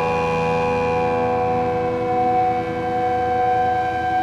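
Music: a held chord of many sustained tones, with no beat.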